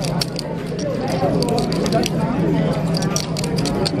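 Poker-room background of many overlapping voices chattering, with frequent sharp clicks of clay poker chips being handled and stacked.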